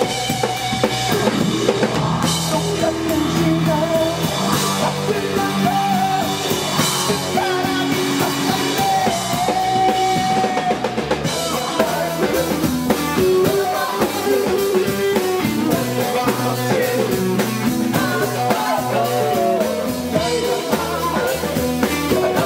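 Live rock band playing: a male voice singing over electric guitar and a drum kit. The drumming grows busier with cymbals about halfway through.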